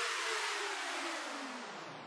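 A tape-stop slowdown effect on the soundtrack: the whole sound, with a couple of wavering tones in it, glides steadily down in pitch and fades away.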